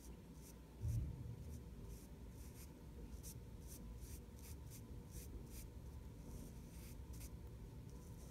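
Sponge-tip eyeshadow applicator rubbing powder onto drawing paper in short, faint scratchy strokes, one or two a second. A low thump comes about a second in.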